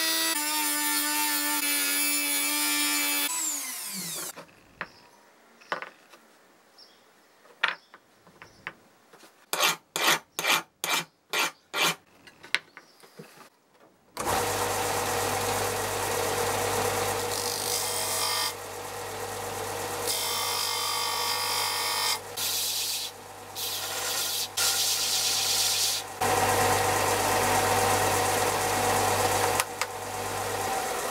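A handheld rotary tool working a small drawer pull, winding down about four seconds in. After a quiet stretch with a few clicks and a quick run of about eight loud short sounds, a Ferrex bench belt-and-disc sander starts about fourteen seconds in and keeps running, its sound changing each time the piece is pressed to the disc and lifted off.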